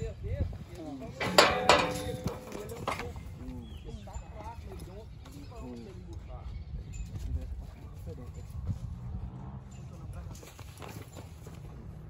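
Background chatter of several people, with a few sharp knocks about one and a half seconds in and another near three seconds, around steel-pipe cattle pens where a young bull is being handled.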